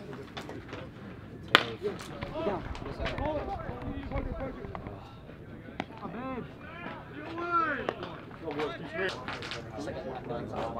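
A single sharp crack of a metal baseball bat hitting the ball about one and a half seconds in, then voices of players and spectators calling out across the field.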